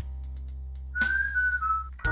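A person whistling a lead line over a backing track. About a second in, a whistled note enters with a percussive stroke and slides down a step, imitating an electric-guitar bend, over a held low chord.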